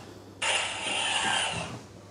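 Sound effect from a talking Superman action figure's small built-in speaker, set off by pressing its chest: a heat-vision blast, a noisy electronic burst of just over a second that starts sharply about half a second in and fades away.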